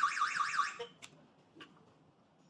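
PG106 alarm host's siren sounding a fast, evenly repeating up-and-down electronic warble, set off by opening the door magnetic detector. It cuts off suddenly under a second in, followed by two faint clicks.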